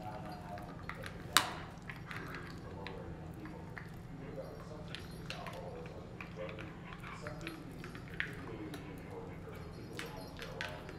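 Standard poodle chewing a bone, with a sharp click about a second and a half in and a smaller one near the end, amid small ticks and a faint jingle of collar tags, over a steady low hum.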